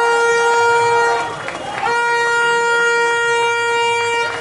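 A fan's horn blown in long steady blasts: one that stops just over a second in, then after a short gap another of about two seconds, over voices from the stands.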